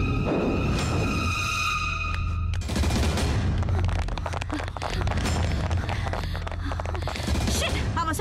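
Dramatic film background score: a deep steady drone under held high notes, giving way after about two and a half seconds to fast, dense percussion hits.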